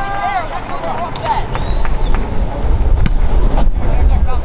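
Outdoor sports-field ambience: wind rumbling on the microphone, with scattered shouts and voices from players and spectators and a few faint knocks.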